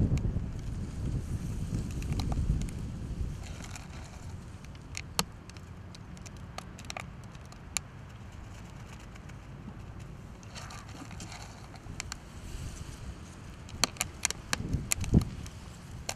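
A clear solid PVA bag being filled by hand with small bait pellets that are packed down, giving scattered light clicks and crackles that bunch together near the end. A low rumble fills the first few seconds.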